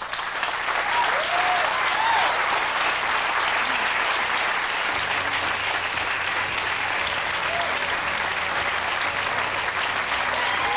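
Theatre audience applauding at the end of a live play, breaking out suddenly and continuing steadily, with a few cheering shouts in the first couple of seconds.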